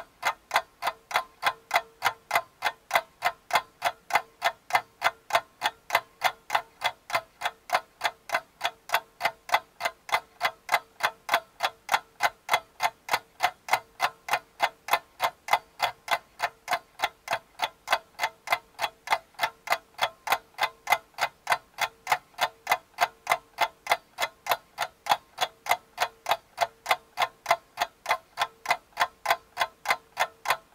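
Clock ticking sound effect: steady, evenly spaced ticks at about three a second, over a faint steady hum.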